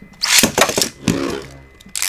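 A Beyblade Burst top launched into a plastic stadium: a loud whirring rip of the launch, then a steady low hum as the top spins in the bowl.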